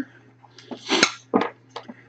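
A few light clicks and taps as a small hard-plastic ohm meter is handled and turned over in the hand.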